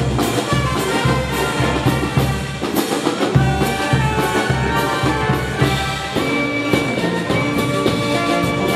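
Andean brass band (banda) playing a dance tune: brass instruments carry the melody over a steady bass drum and cymbal beat.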